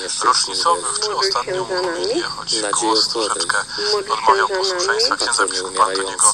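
Speech only: a voice reciting prayers in a radio broadcast.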